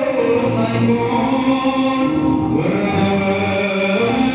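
A man chanting an Ethiopian Orthodox hymn (mezmur) in long held notes that step from pitch to pitch, accompanied by a large Ethiopian lyre (begena) that he plucks.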